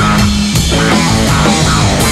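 Punk rock band playing live: electric guitar, bass guitar and drum kit together, loud and driving with steady drum hits.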